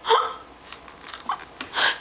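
A toddler's short, sharp vocal sound at the very start, like a hiccup, followed by a couple of softer small sounds near the end.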